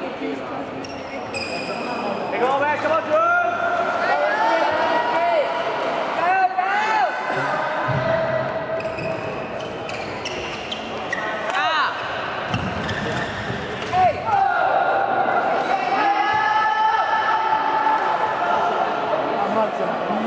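Badminton doubles rally: shoes squeaking sharply and repeatedly on the court mat as the players lunge and turn, with the crack of racket strikes on the shuttlecock.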